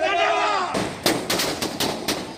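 A man's shouting voice, then, about three-quarters of a second in, a string of firecrackers starts going off: rapid, irregular sharp bangs over a crackling hiss.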